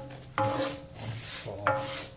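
Wooden spoon stirring raw rice as it toasts in butter in a cast-iron pan: a dry scraping with a light sizzle. Twice, about half a second and a second and a half in, a sudden sound starts a steady pitched tone that is louder than the stirring.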